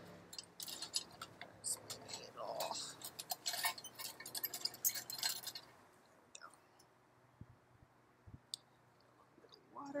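Small tools clicking and clinking as they are handled in a search for a potter's needle tool. The clicks come thick for the first half, then only a few scattered ones follow, over the steady hum of an electric pottery wheel.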